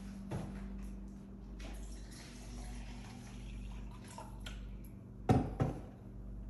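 A kitchen tap running into the sink for a couple of seconds, over a steady low hum, then two sharp knocks close together near the end, the loudest sounds, as cups are handled at the counter.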